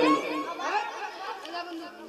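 Only speech, and quiet: a man's amplified voice trails off at the start, and faint background chatter fills the pause.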